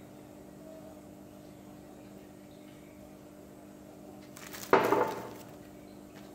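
Faint steady low hum, then about four and a half seconds in a short, loud burst of handling noise as a glass coffee jar is set down on a glass tabletop and a cardboard box is picked up.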